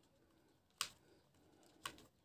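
Near silence with two short, sharp clicks about a second apart: a small screwdriver working on the plastic landing legs of a Syma toy quadcopter as the tiny screws holding the legs are tightened.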